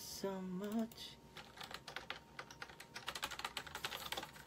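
A short hummed phrase at the start, then rapid typing on a computer keyboard, several key clicks a second.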